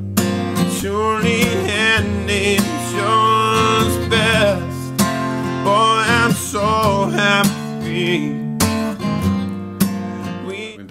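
A man singing a song, accompanying himself on a strummed acoustic guitar, with long held vocal notes that waver in vibrato over steady strummed chords.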